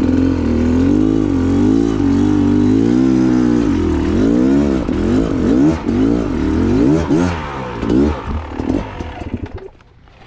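Trail motorbike engine running under light throttle, then revving up and down in a series of quick throttle blips as the bike picks its way down a rocky descent. Near the end the engine note drops away to much quieter as the throttle closes.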